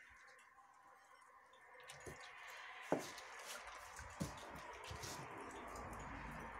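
Wet, cement-soaked fabric being squeezed and folded by hand, making faint squishing sounds. Three short sharp clicks come about two, three and four seconds in, the one at three seconds the loudest.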